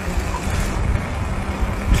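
Outdoor street background: a steady low rumble with a faint hum, of the kind heard with traffic or wind on the microphone.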